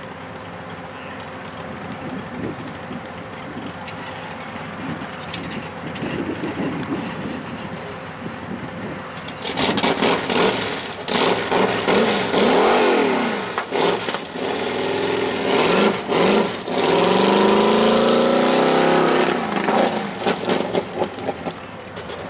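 A race vehicle's engine on a dirt track, running quietly at first, then from about halfway through loud under hard throttle, its pitch climbing and dropping again and again as it accelerates.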